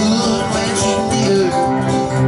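Acoustic guitar and keyboard piano playing a song together, with held notes.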